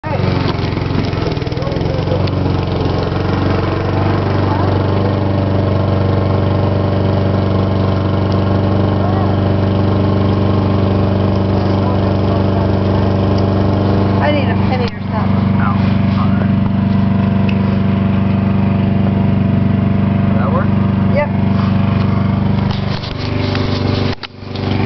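Steady running of a small engine from yard-work machinery, with a brief dip about fifteen seconds in.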